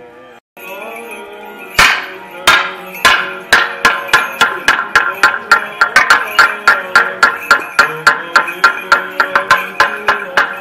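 Wooden toacă (handheld semantron), a long plank beaten with a wooden mallet to lead the procession: single slow knocks from about two seconds in, quickening to a fast even rhythm of about three to four knocks a second. Chanting continues underneath.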